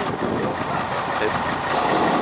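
Diesel engine of a Mercedes-Benz rally truck running steadily at low revs close by.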